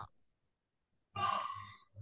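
A single breathy exhale like a sigh, lasting under a second, starting about a second in.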